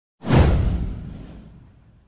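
A whoosh sound effect with a deep boom underneath. It starts sharply, sweeps down in pitch and fades over about a second and a half.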